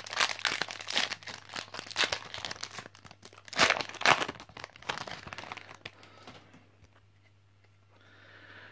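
A Yu-Gi-Oh! Maximum Crisis booster pack's foil wrapper being torn open and crinkled by hand. The crackling is dense, strongest about four seconds in, and dies away over the last couple of seconds.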